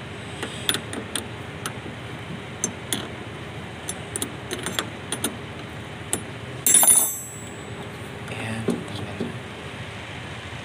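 Socket wrench loosening a car battery's terminal nut: scattered small metallic clicks and ticks, with one loud, sharp metal clink with a brief ring about seven seconds in.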